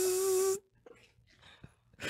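A man's voice imitating a table saw: a steady, held buzzing drone with a hissy edge that cuts off suddenly about half a second in, then near silence.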